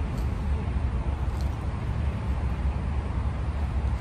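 Steady low rumble of highway traffic noise, even and unbroken.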